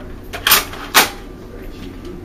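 Two sharp plastic clicks about half a second apart: a Buzz Bee Toys double-barrel dart shotgun being handled between shots.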